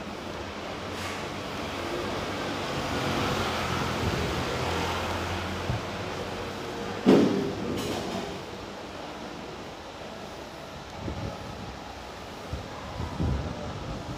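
Street traffic noise: a vehicle engine hum rises and fades over the first six seconds. A single sharp, loud knock comes about seven seconds in, followed by quieter background noise.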